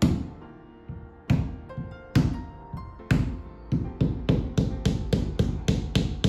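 Mallet blows on the edge of a convertible car's fabric hood, a string of sharp knocks spaced out at first and then coming about four a second in the second half.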